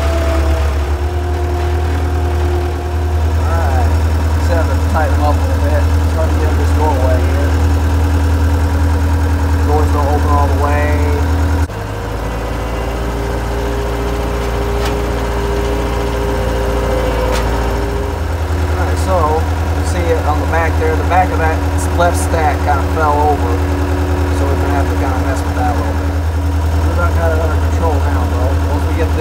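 Skid steer engine running steadily, heard from inside the operator's cab. Its note shifts for several seconds from about 12 s to 18 s in, then settles back.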